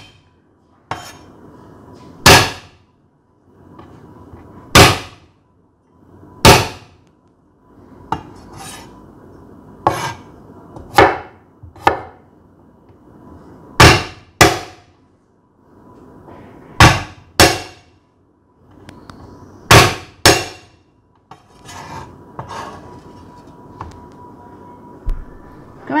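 Steel cleaver striking a wooden cutting board as garlic cloves are smashed and chopped: sharp, loud knocks, single or in quick pairs, every one to three seconds.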